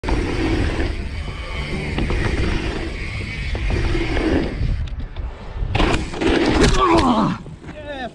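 Dirt jump bike tyres rolling over packed dirt jumps, with wind rushing on a helmet-camera microphone, briefly quieter while airborne. About six seconds in comes a loud crash as bike and rider slam into the ground, ending in a falling pained cry.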